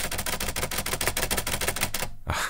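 Loose plastic spacebar of a Soviet TC7063 magnetic-reed keyboard rattling as it is tapped rapidly: a fast, even run of clattering clicks, about a dozen a second. It is extremely rattly.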